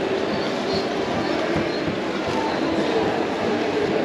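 Steady rolling noise of small wheels from a mobility scooter and a stroller moving over a tiled floor, with the low hubbub of a large indoor hall behind it.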